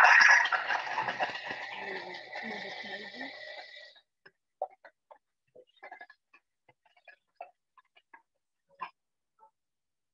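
Thermomix food processor running its blade at speed 9 to chop and grate chocolate pieces: a loud high motor whine with grinding. It fades over about four seconds and then stops.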